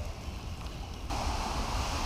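Wind rumbling on the microphone, with a steady outdoor hiss that gets louder about a second in.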